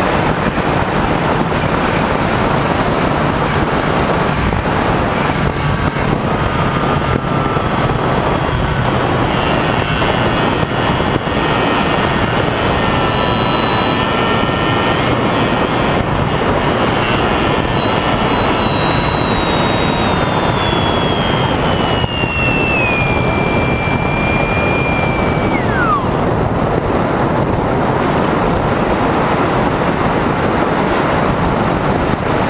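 Wind rushing over an onboard camera on an HK Bixler RC glider in flight, with the whine of its electric motor. The whine slides slowly lower in pitch, then drops away quickly and stops about 26 seconds in, leaving only the wind.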